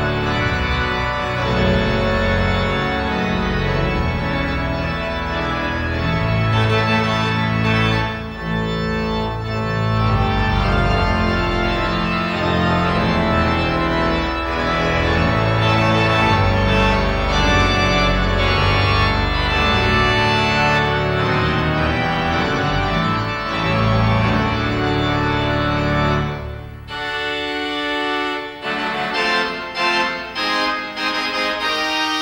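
Pipe organ playing a hymn on full organ, with trumpets, flutes, strings and principals sounding together in loud, sustained chords over a strong bass. About 26 seconds in it drops to a quieter, thinner passage.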